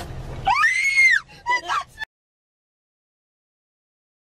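A person's high-pitched scream, rising then falling in pitch over about a second, followed by a few shorter cries. The sound cuts off suddenly about halfway through.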